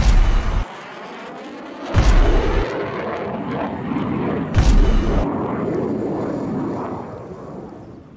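Deep cinematic boom hits, one about two seconds in and another about four and a half seconds in, each trailing into a long rumble that fades away near the end.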